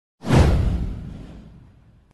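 Whoosh sound effect for an animated intro: one sudden swell with a deep boom underneath, fading away over about a second and a half.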